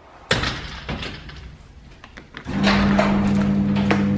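An inside door bangs shut, then fades. About two and a half seconds in, a steady electric motor hum starts up and holds, the sound of a garage door opener running.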